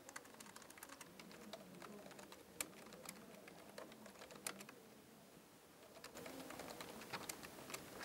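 Faint typing on a computer keyboard: an irregular run of light key clicks, pausing briefly about five seconds in before going on.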